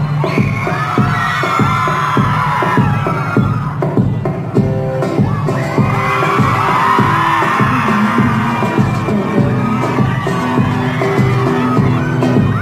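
Live band music at a concert with a steady beat, recorded loud from inside the crowd, with crowd noise underneath.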